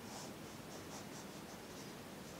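A pen or pencil tip drawing short sketch strokes on paper: a quick series of brief scratches, several a second, as short lines are drawn.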